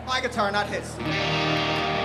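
A man's voice briefly over the PA, then about a second in an electric guitar comes in through its amplifier, holding a ringing chord as a song begins.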